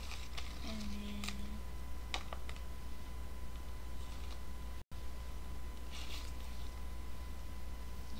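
Quiet handling of craft materials: a few faint clicks and rustles as the wire hoop and sheet are adjusted by hand, over a steady low electrical hum. About a second in there is a brief closed-mouth "mm", and the sound cuts out for an instant just before the middle.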